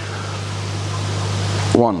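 Steady rushing of churning, aerated koi-pond water, growing slightly louder, over a low electrical hum from the pond's pumps. A man's voice starts counting near the end.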